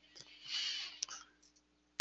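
A person's faint breath, about half a second long, followed by a single soft click about a second in.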